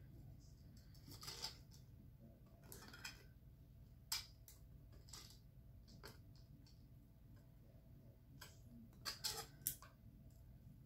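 Faint, scattered small clicks and ticks of jewelry pliers gripping and bending sterling silver wire, several coming close together near the end.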